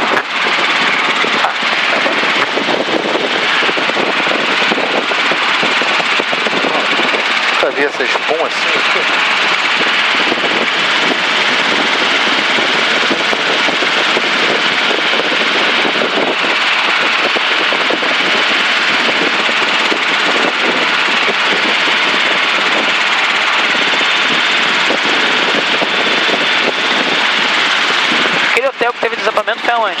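Helicopter in cruise flight heard from inside the cockpit: a loud, steady drone of engine, rotor and airflow that holds level without a break.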